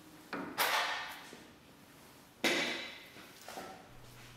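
Two brief handling noises of hands and tools on the front diagonal link of a Porsche 911 (996) suspension, one about half a second in and another about two and a half seconds in, each starting sharply and fading away.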